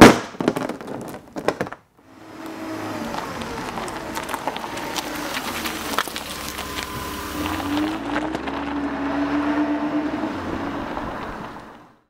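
A metal timing chain clattering and rattling in the hands for about two seconds. After a short pause comes a steady rushing sound with slow rising and falling tones, which fades out near the end.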